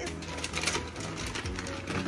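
Lobster pieces in soy sauce sizzling in a hot frying pan, a dense, continuous crackle of small pops, with faint music underneath.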